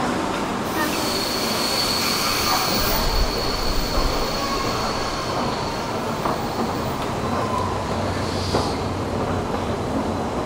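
A passenger train running on the track beside the platform, with a steady high-pitched wheel squeal from about a second in until shortly before the end, over a constant rumble.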